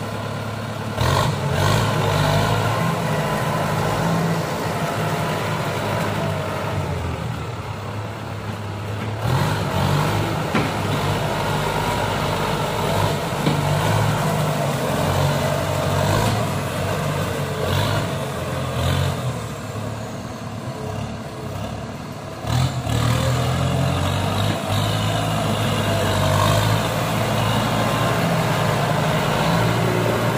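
Kubota M95-series tractor's diesel engine running under load while it maneuvers through mud. The engine note surges up in revs about a second in, again around nine seconds, and once more after about twenty-two seconds.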